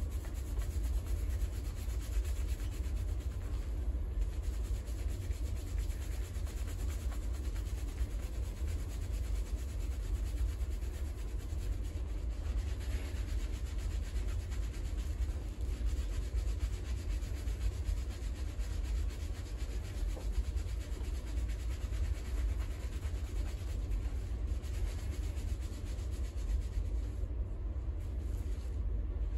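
Fingers scrubbing a shampoo-lathered scalp: continuous rubbing and squishing of foam and hair over a low rumble.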